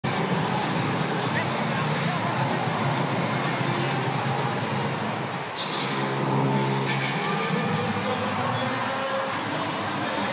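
Large ballpark crowd, a steady din of many voices, a little louder for a moment around the middle.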